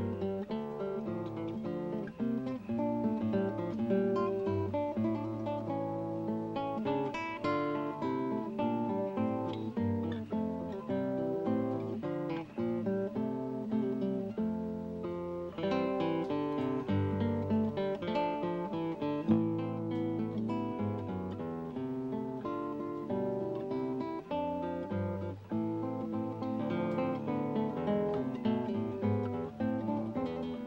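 Solo classical guitar played fingerstyle: a continuous flowing piece of plucked notes, with bass notes sounding under a higher melody line.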